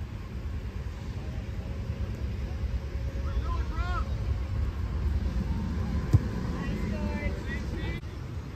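Wind rumbling on the microphone, with distant voices calling out across a soccer field twice and a single sharp thump about six seconds in.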